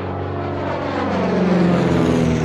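Sound effect of a propeller aircraft engine: a steady, loud drone whose pitch drifts slightly downward.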